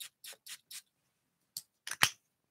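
Jo Malone cologne bottle being handled and its atomiser pumped: a faint series of short clicks and hisses, four quick ones in the first second, then two more near the end, the last the loudest.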